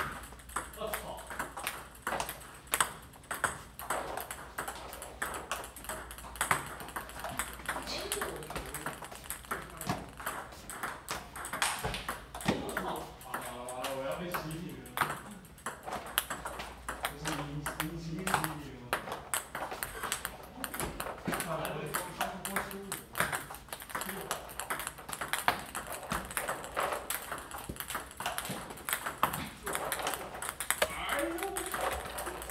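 Table tennis multiball practice: a rapid, irregular run of sharp clicks as celluloid-type plastic balls are struck by rubber-faced paddles and bounce on a STIGA table. Voices talk in the background partway through.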